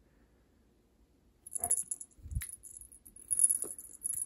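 Cat wand toy with a butterfly lure jingling in short, high, metallic bursts as it is jerked and batted about on a rug, starting about a second and a half in, with a soft thump partway through.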